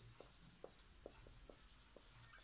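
Faint marker strokes on a whiteboard as a word is written: a string of short, soft squeaks and taps over a low steady hum.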